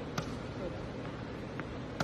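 Tennis ball knocks in an indoor court: a sharp hit just after the start, a fainter one later, and a racket striking the ball at the very end.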